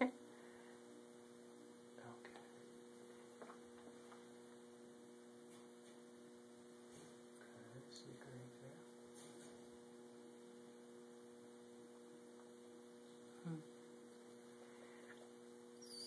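Near silence: room tone with a steady low electrical hum.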